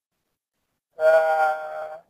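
Dead silence for about a second, then a person's voice holding one long, steady drawn-out vowel, like a hesitant "uh", for about a second.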